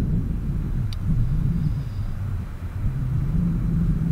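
Steady low outdoor rumble with a faint hum, and a single short click about a second in.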